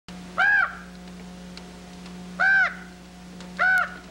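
A crow cawing three times, each caw a short call that rises and falls in pitch, over a steady low hum.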